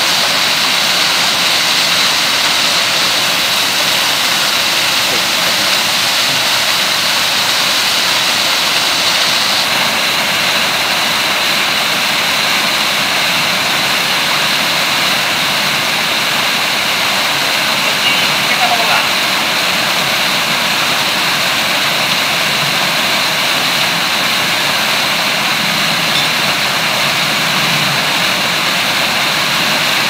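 Small waterfall pouring into a plunge pool close by: a steady, loud rush of falling water.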